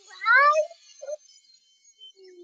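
A short vocal call that rises in pitch for about half a second, followed by a brief lower note about a second in.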